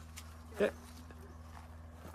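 Quiet outdoor background with a steady low hum, broken once, about half a second in, by a single short vocal sound.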